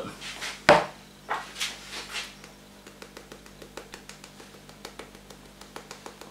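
Salt shaken onto batter in a glass bowl in a few short hissing bursts, with a sharp clack just under a second in, then a pepper mill grinding as a long run of faint, quick ticks.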